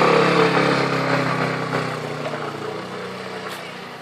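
Motor scooter engine pulling away and riding off, its sound fading steadily as it moves into the distance.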